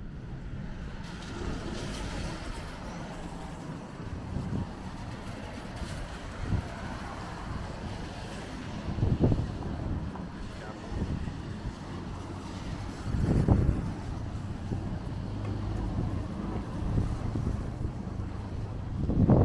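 City street ambience on a rainy day: traffic going by on wet roads under a steady low rumble, with passers-by talking. A few short, louder low rumbles stand out, the strongest about nine and thirteen seconds in.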